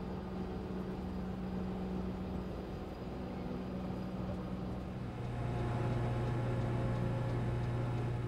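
A steady machine hum over a noisy rumble. About five seconds in, the main tone drops lower and grows a little louder.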